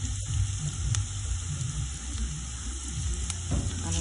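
Chopped onion, garlic and peppers sizzling steadily in hot oil in a stainless-steel frying pan as they sauté, stirred now and then with a silicone spatula.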